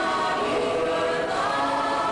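Mixed choir of men's and women's voices singing sustained chords, moving to a new chord about one and a half seconds in.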